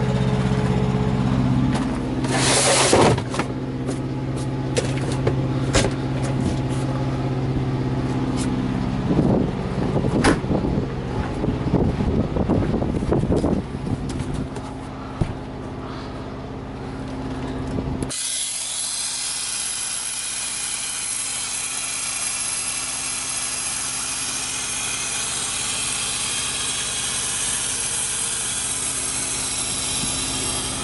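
Semi-truck diesel engine idling steadily, with knocks and rattles, heaviest about two to three seconds in and again around ten to fourteen seconds. At about eighteen seconds the engine sound cuts off abruptly, leaving a steady hiss.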